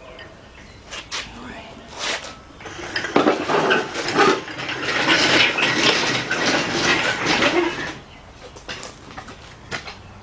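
Metal clanking and rattling from a shop engine hoist and its chain as it is moved with an engine hanging from it, a busy clatter of knocks that swells about three seconds in and dies down near the end.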